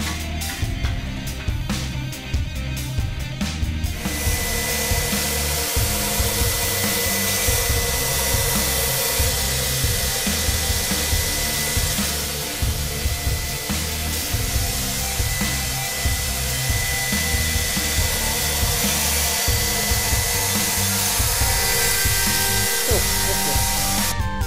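Background music with a heavy beat. About four seconds in, a power grinder starts up and keeps running as a steel knife blade is ground on it: a steady high hiss with a thin whine.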